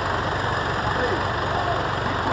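City bus engine idling steadily, a low even rumble, with faint voices behind it.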